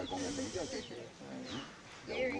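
Low voices talking in the background, with a couple of short, falling bird chirps.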